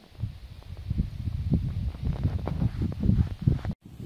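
Wind buffeting the microphone: an uneven, gusty low rumble with crackles, which cuts out briefly near the end.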